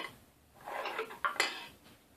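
Steel guide rods of a CNC router's Y-axis table sliding out of their support blocks: a metal-on-metal scrape about half a second in, then one sharp metallic clink.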